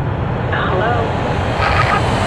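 Jet airliner passing overhead: a steady low rumble with a faint high whine that slowly falls in pitch. A brief wavering voice-like sound cuts in about half a second in.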